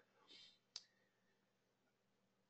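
Near silence, broken once by a single short click about three-quarters of a second in.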